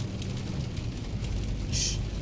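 Steady low hum of a car's cabin on the road, engine and tyres, with a brief hiss near the end.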